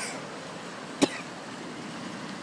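A man's single short cough about a second in, over a steady rushing background noise.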